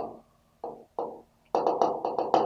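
Pen tapping and scraping on an interactive touchscreen board while a word is handwritten: a few separate taps, then a quick run of taps about seven a second from about a second and a half in.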